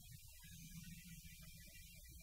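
Near silence: a low, steady hum with faint hiss in the background of an old film soundtrack.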